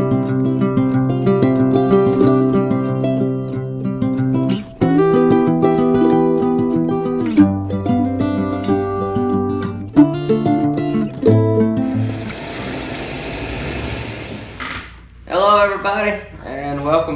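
Background music of held notes that change every second or two, with a hissy wash joining about twelve seconds in.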